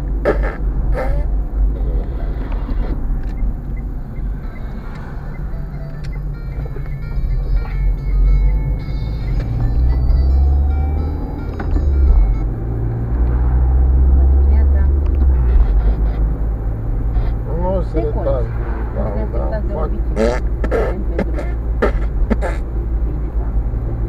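Engine and road noise inside a moving car's cabin, a steady low rumble that grows louder from about ten seconds in to about sixteen seconds. A few short knocks come about twenty seconds in.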